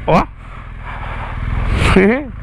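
BMW R 1200 GS boxer-twin engine running at low revs as the bike edges toward a stairway, with a rushing noise that grows louder over the second half.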